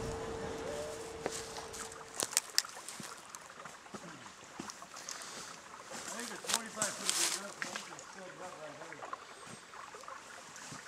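A steady hum for about two seconds, then a faint outdoor background of running creek water with scattered sharp clicks and faint distant voices.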